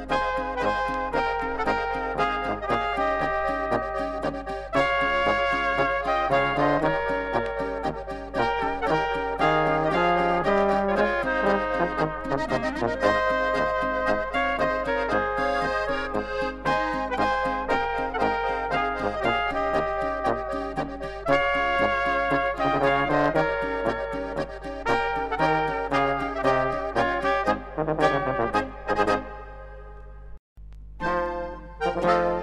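Instrumental Oberkrainer-style polka led by brass with accordion, over a steady oom-pah bass rhythm. It winds up with a few closing chords near the end.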